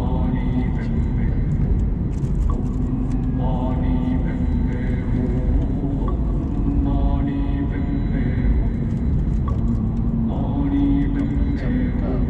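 Steady low road and engine rumble inside a moving Mercedes-Benz car.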